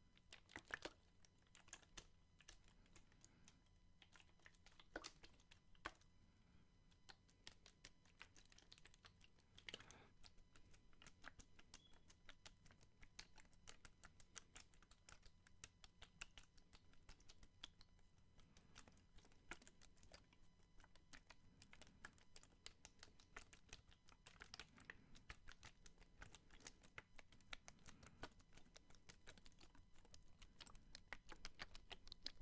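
Faint, irregular tapping and crackling of fingers on a plastic water bottle, a long run of small clicks at uneven spacing.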